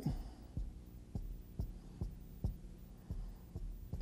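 Faint soft low thumps, roughly two a second, over a quiet steady room hum.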